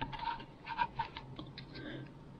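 Light, irregular clicks and taps, about a dozen in two seconds, some with a faint ring.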